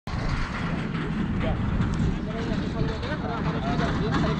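Steady low rumble of wind buffeting the helmet camera's microphone on an open field, with faint distant voices of people talking from about a second and a half in.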